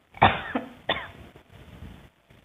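A woman coughing twice, the two coughs under a second apart.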